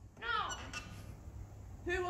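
A short voiced vocal sound from an actor on stage, its pitch rising and falling, followed by a quiet pause in a hall; the start of a loud shouted 'No!' comes at the very end.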